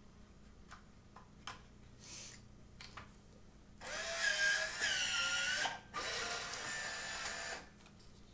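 A small electric motor runs in two bursts of about two seconds each, its pitch dipping and recovering. A few light clicks come before it.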